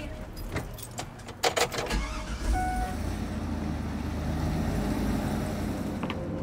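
A few sharp knocks and a jingle of keys, then a short steady beep. About two seconds in, the bus's engine comes in low and runs on steadily, its pitch rising slowly as it gathers speed.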